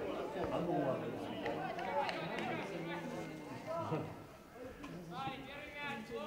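Boys' voices shouting and calling across a football pitch during play, overlapping and not clearly intelligible, with louder high-pitched shouts near the end.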